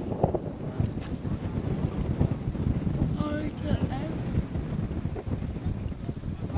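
Wind buffeting the microphone as a rough, uneven low rumble, with faint voices in the background about halfway through.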